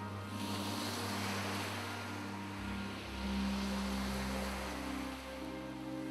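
Sea waves washing, with soft background music of long held notes underneath.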